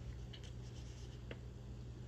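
Faint rustling and light ticks of a large paper instruction sheet being held and handled, over a low steady hum.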